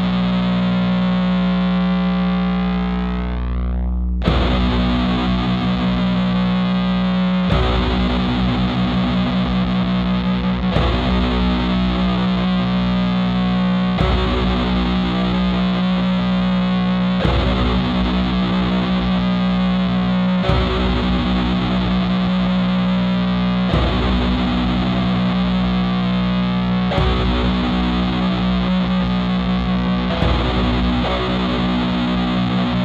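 Black/doom metal with heavily distorted electric guitars over a steady low drone. The opening sounds muffled, its treble closing in, until the full band cuts in about four seconds in, its pattern changing every three seconds or so.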